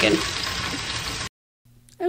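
Chicken pieces sizzling as they fry in a hot pot for about a second, then cutting off suddenly into silence.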